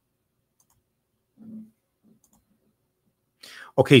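Near silence with a few faint clicks and a brief, faint low sound about a second and a half in, then a man says "Okay" at the very end.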